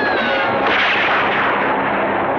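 A rifle shot a little over half a second in, its report trailing off for about a second, over a falling, wailing cry.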